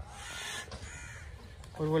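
A bird calling during the first half-second or so, then a man starts speaking near the end.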